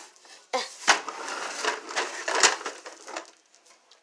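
Plastic toys being handled and moved on a tile floor: a scratchy rubbing and scraping with two sharp clacks, about a second in and again near two and a half seconds, dying away near the end.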